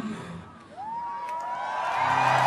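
A festival crowd starting to cheer, with one long whoop that rises about a third of the way in and then holds steady.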